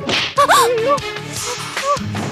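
A dramatic music sting: a rushing swish, then a sharp whip-crack hit about half a second in, over a low musical drone and pitched swells.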